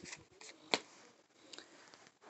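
Faint handling noise: brief rustles and a few soft clicks, the sharpest one about three-quarters of a second in.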